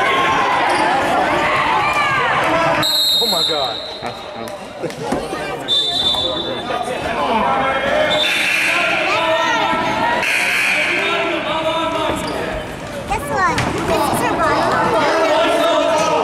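Basketball game in a large echoing gym: a referee's whistle blows short blasts a few times in the first half, over a steady mix of players' and spectators' voices and a basketball bouncing on the hardwood floor.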